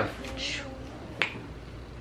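Quiet room tone with a faint breathy hiss, then one sharp click about a second in.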